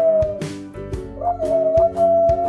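Adult beagle howling, long drawn-out howls that break off and start again about halfway through, over background music with a steady beat.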